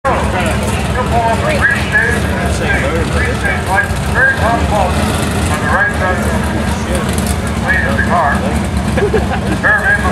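Modified New Edge Ford Mustang drag car's V8 idling with a steady, rough low rumble, while a voice talks over it.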